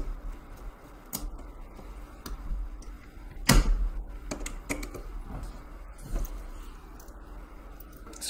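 Screwdriver and metal jumper links clicking against the screw terminals of a control transformer's terminal block as the screws are driven down; a few scattered clicks, the loudest about three and a half seconds in.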